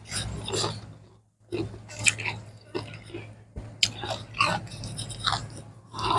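A person chewing a mouthful of food close to the microphone, with irregular short, sharp bites and a pause about a second in.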